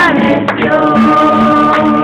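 Group worship singing with instrumental backing: voices hold a long sustained note over a steady, pulsing low accompaniment.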